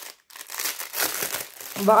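A thin clear plastic bag crinkling and rustling as it is handled and pulled at, in a run of crackly rustles after a brief pause.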